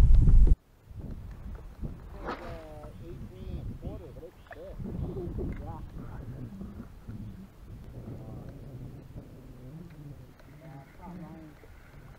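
Wind buffeting the microphone, cut off abruptly about half a second in. Then faint voices talk on and off, with nothing else clearly heard.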